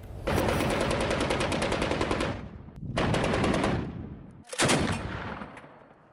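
Automatic machine-gun fire in three bursts: a long burst of about two seconds, then two shorter ones, the last trailing off as it dies away.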